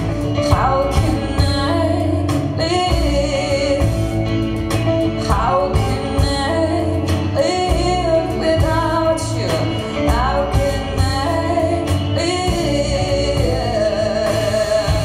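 Live folk song: a woman singing long, bending notes over an acoustic guitar, with a low bass line underneath.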